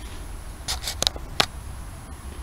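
A few short scratchy rustles and clicks, clustered a little after the half-second mark, over a low steady rumble: close handling noise.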